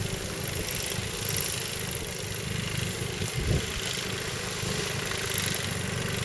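Wind buffeting the microphone: a steady low rumble with hiss, with one brief louder thump about three and a half seconds in.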